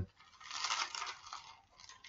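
Soft, scratchy rustle of paper pages being turned, lasting about a second and then fading.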